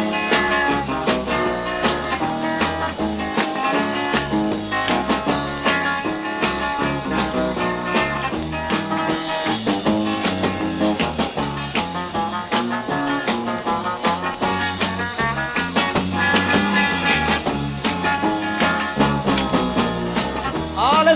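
Instrumental break of an upbeat pop song: a guitar-led band playing with a steady beat, no singing.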